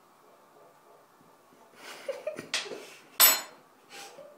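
A woman coughing and spluttering on a mouthful of dry ground cinnamon: after a quiet start, three short bursts, the last, a little over three seconds in, much the loudest. The powder is getting into her throat.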